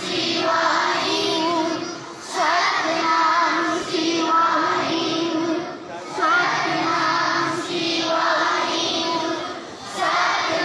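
A large group of children singing a devotional hymn together in unison. The phrases are about four seconds long, with brief breaths between them.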